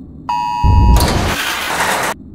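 A steady electronic alert tone sounding two close high pitches at once starts about a quarter second in. Within a second it is swallowed by a loud burst of rushing storm noise with a deep boom, and the noise cuts off abruptly.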